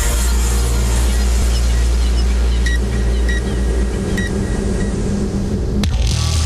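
Produced radio launch sound effects: a deep, steady rumble for about four seconds, with a few short, high electronic beeps starting a little under three seconds in. A sharp hit comes near the end.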